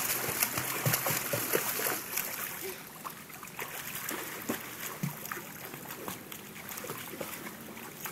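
A small child swimming in a pool, kicking and paddling: splashing water, loudest in the first two seconds, then lighter, continuous splashing.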